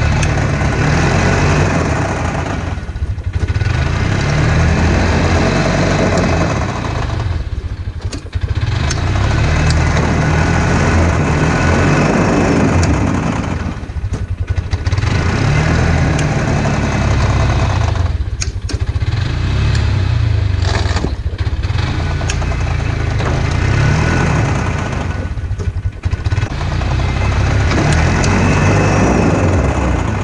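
Engines running loud in surges of several seconds with brief dips between, as a tracked Bobcat 3400 utility vehicle pulls a stuck four-wheeler by chain through snow.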